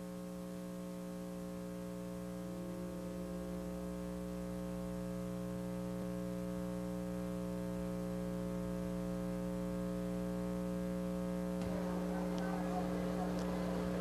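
Steady electrical mains hum with a stack of overtones, a buzzing tone on the old recording that grows slowly louder. A faint hiss-like noise joins it about three-quarters of the way through.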